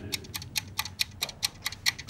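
Steady, rapid ticking in a film trailer's soundtrack, about six or seven sharp ticks a second, like a clock or timer used to build tension.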